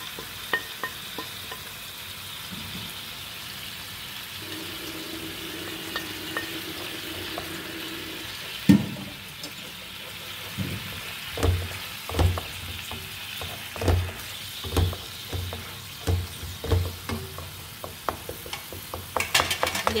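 Tomato-and-onion masala sizzling steadily in a frying pan while a wooden spoon stirs it. One sharp knock comes about nine seconds in, and after that the spoon knocks against the pan roughly once a second.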